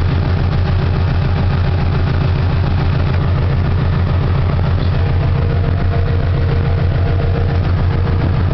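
Swapped-in Subaru flat-four engine idling steadily with an even low pulse, heard from inside the car's cabin with the air conditioning running and its compressor still engaged.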